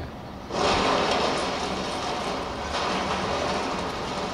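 Caterpillar wheel loader working as it pushes down a small structure: a steady, noisy din of engine and crunching debris that starts suddenly about half a second in.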